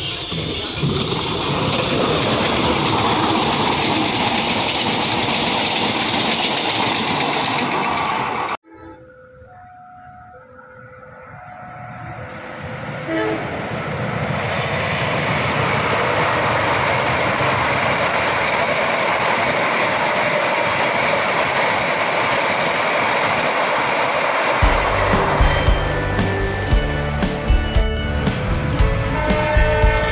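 Trains passing on the main line: the rumble and wheel noise of a passing passenger train, cut off suddenly, then a diesel locomotive-hauled train heard approaching, growing louder over several seconds and running past steadily. Music with a beat takes over near the end.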